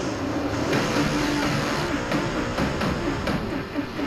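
Dirt late model race car engine heard from inside the cockpit, its pitch rising and falling as the throttle is worked through the turns. Music plays along with it.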